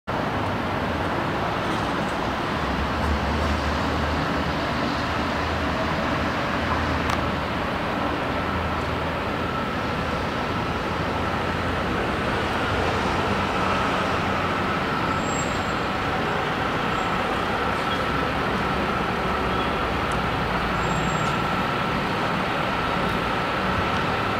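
Steady street noise of traffic and heavy truck engines running, with a low rumble throughout. A faint steady whine comes in about halfway through.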